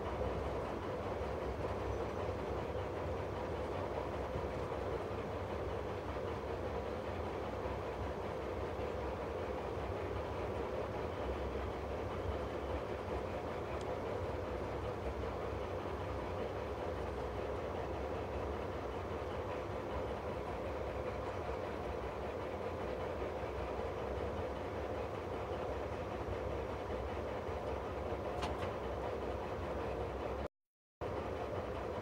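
Diesel engine of a Harzkamel, the narrow-gauge diesel locomotive of the Harz narrow-gauge railways, running steadily as the locomotive rolls slowly along, heard from its cab: an even drone with a steady hum over a low rumble.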